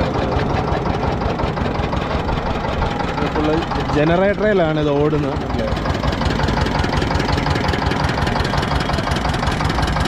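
Stationary diesel engine running steadily at an even idle, driving a sugarcane juice crusher through a large flywheel.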